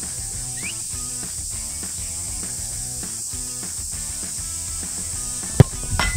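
Background music with a steady high hiss, then about five and a half seconds in a single sharp, loud thud of a football being struck for a free kick.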